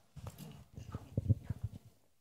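Microphone handling noise: a run of soft, irregular low thumps and knocks as a handheld microphone is passed to an audience member.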